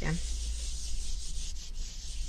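A cloth wiping a wooden desktop by hand, a steady rubbing hiss.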